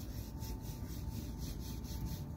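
Faint, steady rubbing and scraping of a coconut being pushed and turned in sand by hand.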